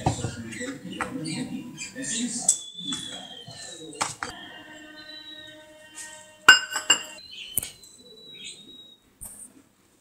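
Stainless-steel mesh sieve handled and tapped over a bowl while sifting flour: soft rustling and scraping, then a few sharp metallic clinks, the first about four seconds in leaving a brief ringing.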